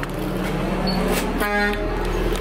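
A brief vehicle horn toot, one short flat-pitched note about a second and a half in, over a steady low hum and background noise.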